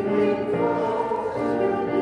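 A woman's voice singing a hymn in slow, held notes that change pitch about every half second to a second.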